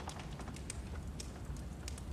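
Faint, steady background ambience from a TV drama's soundtrack, with a few soft clicks scattered through it.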